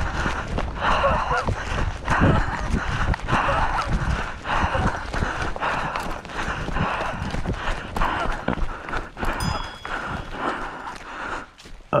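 Running footsteps on a dirt and leaf path in a steady rhythm, with gear rustling at each stride. The rhythm breaks off near the end as the runner comes to a stop.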